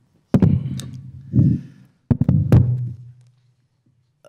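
Microphone handling noise: a handheld microphone being passed from hand to hand, giving about four sudden knocks, each followed by a low rumble, over the first three seconds, with dead gaps in between.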